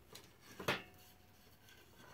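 Light handling noise and one sharp knock about two-thirds of a second in, followed by a brief faint ring: tools and a wooden workpiece being handled on a folding workbench after drilling.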